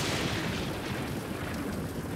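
Heavy rain pouring down, a steady hiss that starts suddenly, with a deep low rumble underneath.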